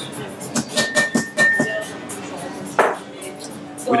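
A run of light taps and clinks on a glass mixing glass, one of them leaving a brief ringing tone, then a single sharper knock about three seconds in, over background music.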